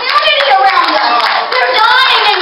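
Church congregation clapping, with several voices calling out over the claps.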